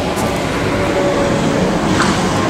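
Steady running noise of a John Deere 5095M tractor's four-cylinder turbo diesel, a constant rumble and hiss with a faint steady tone in the middle.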